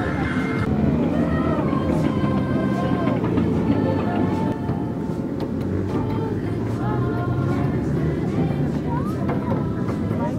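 Steady low rumble of a ride-on Christmas train in motion, heard from aboard, with faint voices in the background near the end.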